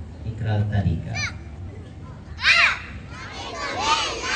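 Young children's high-pitched voices, one child calling out short words into a microphone, loudest about two and a half seconds in. Near the end a group of children start speaking together, as at the start of a recited pledge.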